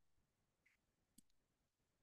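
Near silence, with one very faint click a little over a second in.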